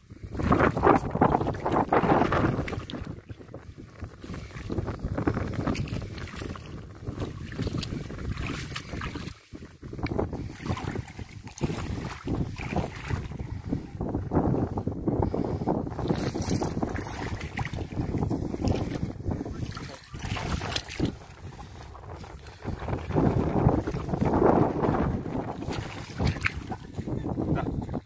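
Wind buffeting the microphone in gusts. The noise rises and falls unevenly, strongest about a second in and again near the end.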